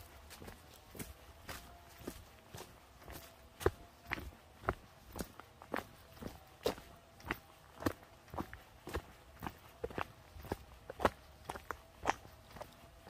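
Footsteps of a walker on a gravel forest track, crunching at a steady pace of about two steps a second.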